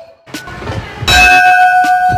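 A hanging brass school bell struck once by hand about a second in, then ringing on with a clear, steady tone.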